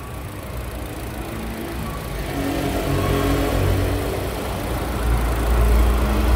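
A Chevrolet Cruze's four-cylinder Ecotec petrol engine running, heard close up in the engine bay: a steady hum that grows gradually louder, with a deep rumble building over the last second or so.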